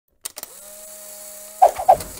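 Sound effects for an animated camera-aperture logo. Two faint clicks are followed by a faint steady whine, then two loud, sharp clicks near the end.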